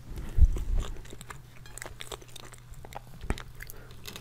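Close-miked chewing of a mouthful of biscuit cake, loudest about half a second in, then scattered small mouth clicks.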